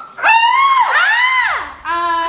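Two high-pitched vocal squeals, each rising and falling, in the first second and a half: excited shrieks with no words, then a quieter voice near the end.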